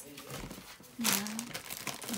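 Paper cards rustling and crinkling as they are handled and lowered, followed about a second in by a woman's short spoken 'yeah'.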